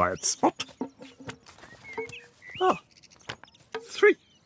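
A man's short wordless vocal noises, brief mumbles and a rising 'hm?', between scattered quick clicks and taps.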